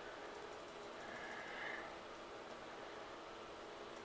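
Faint steady room noise: a soft hiss with a low hum, and a brief soft rustle about a second in.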